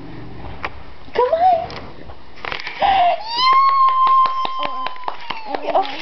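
A toddler vocalizing: two short rising babbles, then one long high-pitched squeal held for over two seconds. A run of quick sharp taps, about four a second, sounds over the squeal.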